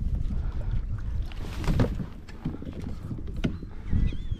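Water splashing around a hooked redfish as it is grabbed by hand beside a kayak and lifted aboard, with a few knocks from the handling and a steady low rumble underneath.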